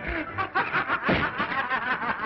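People laughing heartily in a quick run of several short pulses a second, on a narrow, early sound-film soundtrack.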